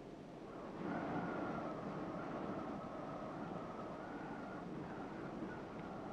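A steady rushing noise that swells in about a second in and holds, with a faint steady high whistle above it.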